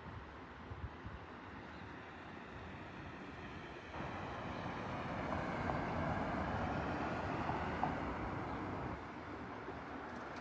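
A sedan driving past on the street, its tyre and engine noise swelling from about four seconds in, loudest around six to eight seconds, and fading near the end.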